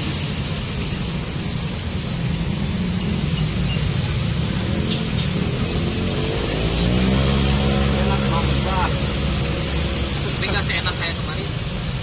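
Street traffic with a steady low engine rumble; about six and a half seconds in, a passing motor vehicle's engine grows louder and rises in pitch for a couple of seconds.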